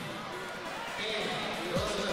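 Indistinct voices calling out in a large hall during a judo hold-down, with a single low thump shortly before the end.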